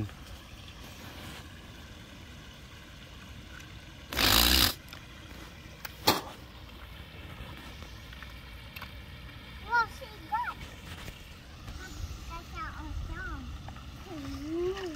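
Shallow park stream running steadily, with water bubbling up from a small jet in the streambed. About four seconds in comes a loud rush of noise lasting about half a second, and a sharp click follows about two seconds later.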